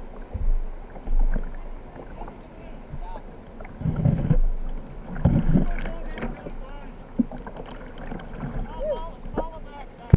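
Water splashing and sloshing around a whitewater kayak as it is paddled, with wind on the microphone; two louder surges about four and five seconds in.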